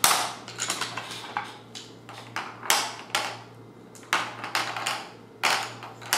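Wooden Cuisenaire ten rods clacking on a tabletop as they are set down and pushed into a row: about a dozen irregular short knocks, the loudest at the very start.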